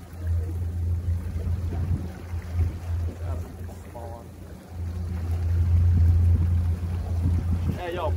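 Low, uneven rumble of wind on the microphone over a running boat outboard, dipping about halfway through and swelling again, with faint voices now and then.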